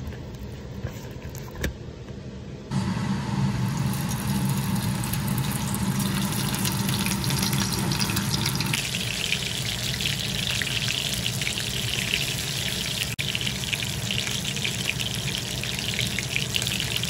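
A whole spice-coated fish sizzling in hot oil in a cast-iron skillet: a steady frying hiss that starts suddenly about three seconds in and turns brighter about nine seconds in. Before it, soft sounds of hands working the coating onto the fish.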